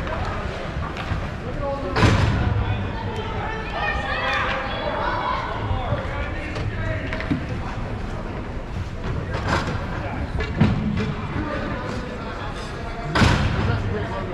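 Youth ice hockey game: scattered shouting voices of players and spectators over the rink's background noise, broken by a few sharp knocks of sticks or puck, the loudest about two seconds in and near the end.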